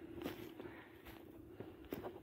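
Footsteps of a person walking through dry cut grass and brush on a slope, a few faint steps with a sharper one near the end.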